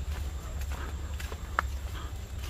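Footsteps on a dry dirt path littered with leaves and twigs: a few light, irregular crunches and scuffs over a steady low rumble.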